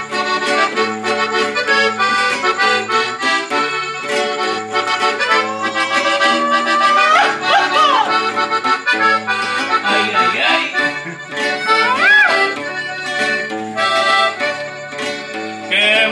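An accordion plays a lively instrumental introduction to a traditional Mexican song, melody over a steady beat of bass notes. Two brief swooping high sounds rise and fall above it, one a little before halfway and one about three-quarters through.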